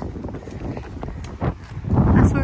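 Wind rumbling on the microphone, with a few soft knocks of footsteps on a wooden footbridge, the clearest about one and a half seconds in.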